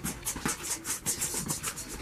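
A person panting rapidly close to the microphone, several short breathy gasps a second.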